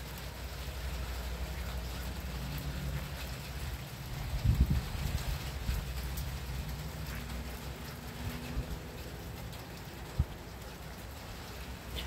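Steady rain falling, a soft even hiss, over a low rumble. The rumble swells briefly about four and a half seconds in, and there is a single click near the end.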